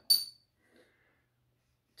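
A single short metallic clink near the start, with a brief high ring, as small metal pliers are handled against a wooden spreading board; then near silence.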